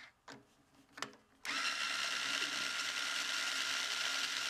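Ernie Ball string winder turning a guitar tuner to unwind a string, with the winder and the tuner gears making a steady whir that starts about a second and a half in.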